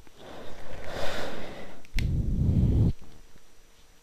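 Handling of an SDHC memory card's plastic blister package, with a breathy rush of noise, a sharp click about two seconds in, and then a heavier low rumble for about a second.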